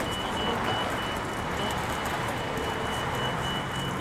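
City street traffic noise with a large vehicle's engine running. During the first second a rapid, high-pitched electronic beeping from a vehicle warning beeper sounds over it.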